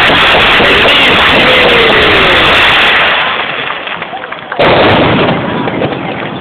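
Fireworks display going off in a dense, continuous barrage. It eases off about three seconds in, then a sudden loud new volley starts shortly before the five-second mark.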